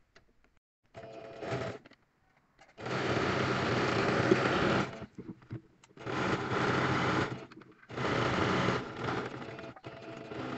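Electric domestic sewing machine stitching a seam through dress fabric in bursts: a short run about a second in, then three longer runs of roughly two, one and a half, and one second, with pauses between as the fabric is guided.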